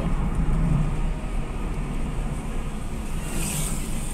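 Car running along a town street heard from inside the cabin: a steady low rumble of engine and tyre noise, with a brief high hiss near the end.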